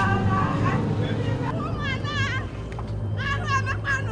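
A voice singing a wavering, trembling line without clear words, over a low steady hum.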